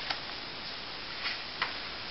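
Paper pages of a softcover textbook turned by hand: a few short, crisp paper flicks, unevenly spaced, over a steady hiss.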